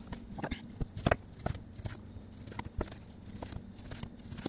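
Chef's knife cutting through partly frozen chicken breast on a plastic cutting board: irregular light knocks of the blade meeting the board, about two a second, the loudest about a second in.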